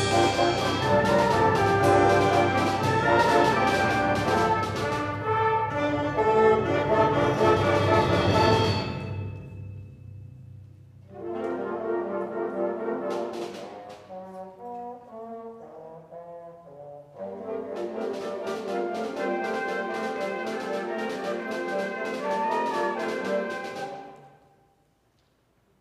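High school concert band playing a loud, brass-heavy piece. About nine seconds in it falls away to a softer, sparser passage, then the full band comes back in and stops abruptly at the end.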